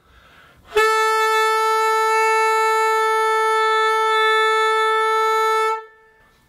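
Tenor saxophone with a Yanagisawa size 8 metal mouthpiece holding one long, steady note, the top B on the tenor (concert A 440), starting about a second in and held for about five seconds. It is an intonation test, and the note sounds pretty much in tune, a hair on the sharp side.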